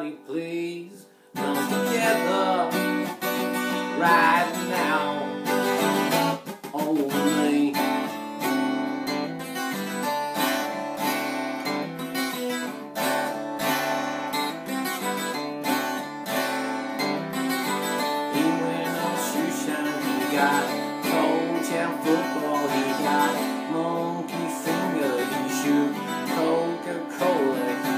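Twelve-string acoustic guitar strummed with no vocal. It comes in after a brief gap about a second in and then carries on steadily.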